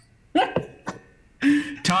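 Meeting participants' voices over a video call: a short vocal sound with a rising pitch about a third of a second in, then a click, then speech.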